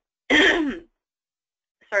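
A woman clearing her throat once, briefly, a third of a second in.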